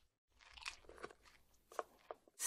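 Faint eating sounds at a dinner table: chopsticks scraping and tapping in paper takeout cartons, a few small scattered clicks.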